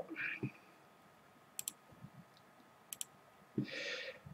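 Two sharp computer mouse clicks, each a quick double tick of the button going down and coming up, about a second and a half in and again about three seconds in, with quiet between them.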